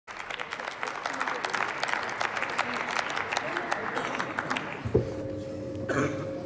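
Applause from parliamentarians, many hands clapping, dying away about five seconds in. A single knock and a brief steady hum follow near the end.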